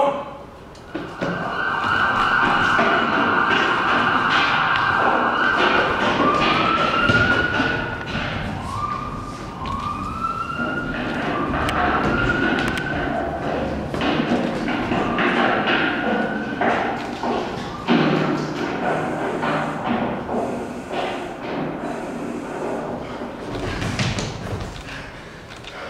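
Police sirens played as a theatre sound effect. A held tone sounds for the first few seconds, then the sirens wail, rising and falling over and over through the middle. A busy layer of thuds and knocks runs underneath.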